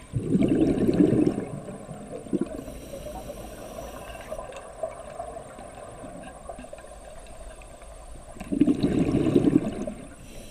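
Scuba regulator exhaust heard underwater: the diver's exhaled bubbles bubble out loudly in two bursts of about a second and a half each, one just after the start and one near the end, with a quieter steady underwater hiss between breaths.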